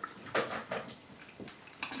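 A man chewing a mouthful of food, with a few short, soft mouth noises spread through the moment.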